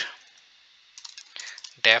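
Computer keyboard typing: a quick run of keystrokes starting about a second in.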